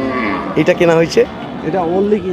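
Cattle mooing amid men's talk.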